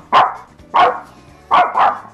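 Small white dog barking four times, the last two barks close together.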